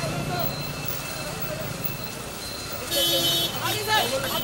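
Street traffic with the steady hum of idling vehicle engines and a crowd talking around the car. A short vehicle horn blast sounds about three seconds in, the loudest thing here.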